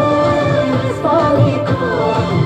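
Nepali Tihar folk song: a solo voice singing a wavering melody over a steady drum beat.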